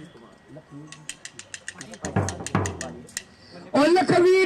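Drum being struck: a quick run of sharp taps with two deep booms in the middle. Loud music starts just before the end.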